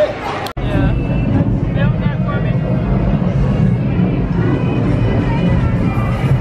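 Busy restaurant dining room: crowd chatter over background music and a steady low rumble. The sound drops out abruptly about half a second in, then resumes.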